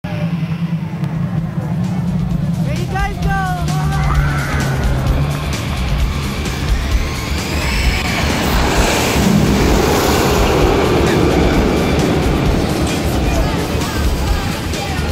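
Music with voices over park noise; about eight seconds in, a roller coaster train launches and rushes along the track, a rising and falling rush.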